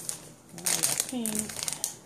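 Cellophane wrapping of bunches of paper flowers crinkling as a hand grabs and moves the packs, in a rapid run of rustles starting about half a second in.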